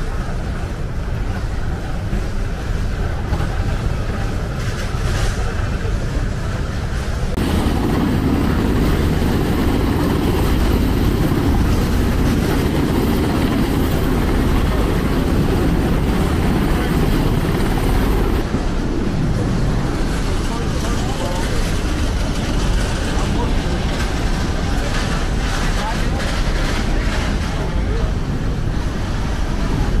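Loud, steady low rumble of a ship's hangar bay with indistinct crew voices and light knocks of cargo being handled. About seven seconds in the sound changes abruptly to a louder, fuller rumble.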